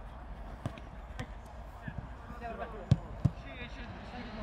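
A football being kicked back and forth in a quick passing drill: sharp, separate kicks, two of them about a second apart near the end the loudest. Short shouts from players come between the kicks.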